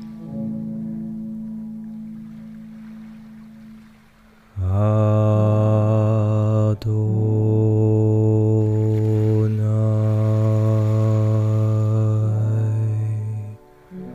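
A deep chanted voice holding long mantra-like notes. A softer held tone fades over the first few seconds, then a louder, deeper note starts about four and a half seconds in and is held steadily for about nine seconds before stopping.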